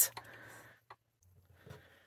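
Quiet handling sounds: a soft rustle of fabric and one small click about a second in, as spring-loaded thread snips cut the thread off the sewn seam.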